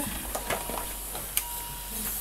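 Light clicks and knocks of medical equipment being handled, with a faint short beeping tone a little after the halfway point.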